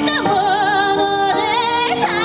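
A woman singing into a microphone, amplified, holding long notes with vibrato over steady instrumental accompaniment.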